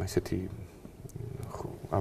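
A man's voice: a short throaty vocal sound at the start, a brief pause, then speech resuming near the end.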